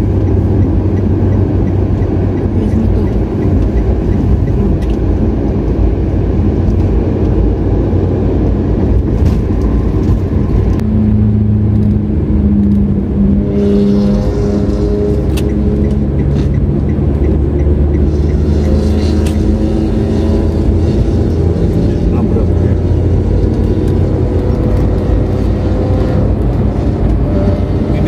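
Car cabin noise while driving on a smooth asphalt highway: a steady rumble of tyres on the road with the engine's hum, and a clearer pitched drone for a few seconds about halfway through.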